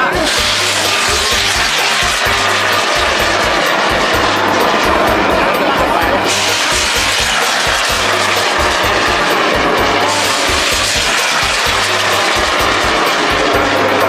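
Bang fai festival rockets firing off their launch towers with a loud rushing hiss that starts suddenly three times: at the start, about six seconds in and about ten seconds in. Music with a steady low beat plays underneath.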